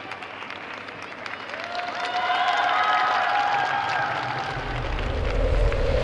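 Arena crowd applauding steadily, with voices calling out from the stands partway through. About four and a half seconds in, a deep bass swells in and grows louder: the opening of the skater's program music.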